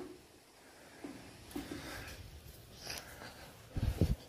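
Quiet stretch of faint breathing with a short sniff, and a low thump near the end.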